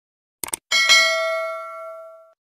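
A quick double mouse-click about half a second in, then a bright bell chime that rings and fades over about a second and a half: a notification-bell sound effect for the subscribe animation.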